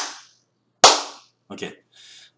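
Sharp single hand claps about a second apart, one right at the start and another just under a second in, made as sync marks to line up the audio recorded on a smartphone with the audio recorded on a computer.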